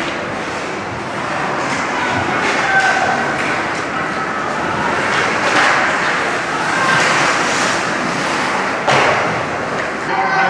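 Ice hockey play in a rink: skates scraping the ice, sticks and puck clacking, and voices calling out, with one sharp bang about nine seconds in.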